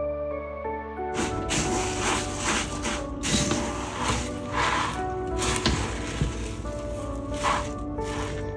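Background music with a sustained melody. From about a second in, the irregular rustling and scraping of crisped rice cereal being stirred into melted marshmallow with a silicone spatula in a bowl.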